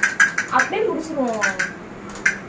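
Rapid, even clicking, like a small rattle or beads being shaken, about five clicks a second, stopping about half a second in; then a voice with a long falling pitch, and a few more clicks.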